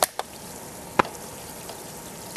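Hydrogen bubbling out of hot water reacting with aluminum and catalytic carbon, a steady faint fizzing. Two sharp clicks at the start and another about a second in break the fizzing.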